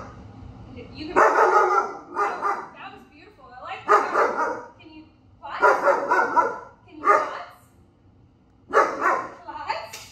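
Five-month-old German Shepherd puppy barking in a string of about seven short outbursts, each under a second, with pauses between.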